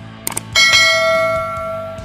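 Two quick mouse-click sound effects, then a bright bell ding that rings out and fades over about a second and a half: the click-and-bell sound of a subscribe animation, over faint background music.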